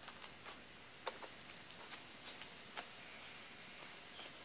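Faint, scattered light taps and clicks at irregular intervals, the sharpest about a second in.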